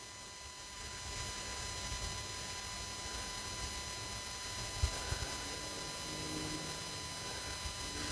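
Faint steady electronic whine of several high tones, typical of a TriField TF2 meter's speaker sounding off on a strong RF signal while the meter is over range, over a low rumble of wind on the microphone. A brief thump about five seconds in.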